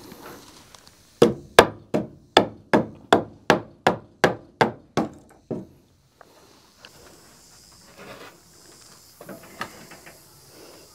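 Hammer tapping on wood, about a dozen quick, even strikes at roughly three a second, loudest at first and growing lighter. It comes from working the wooden wedges set around a newly hung barn door to hold it in place.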